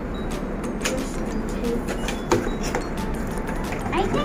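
Cardboard puzzle box being handled and its lid flap pried open: a handful of scattered short taps and scrapes over a steady low hum.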